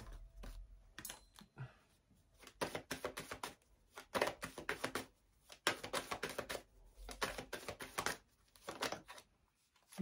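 A deck of tarot cards being shuffled and slid through the hands, with cards flicked and laid down: quick runs of light clicks and snaps, broken by short pauses.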